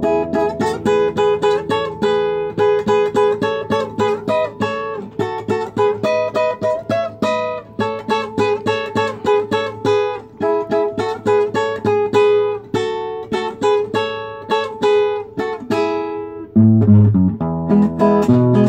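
Acoustic guitar played solo: a quick picked melody line of several notes a second over bass notes, changing to strummed chords with heavier bass about a second and a half before the end.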